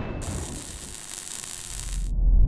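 Logo-sting sound effect: a hiss of static starts suddenly and cuts off at the end, over a low rumble that builds near the end.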